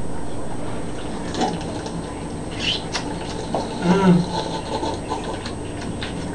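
Quiet room with small sipping sounds from soda cans, and a short hummed "mm" about four seconds in.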